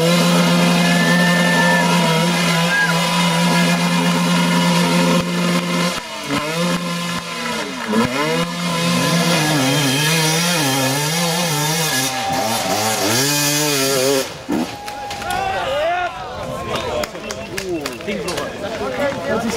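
Enduro motorcycle engine held at high revs for about six seconds, its rear wheel spinning in loose dirt on a steep climb, then revving up and down unevenly. Spectators shout near the end.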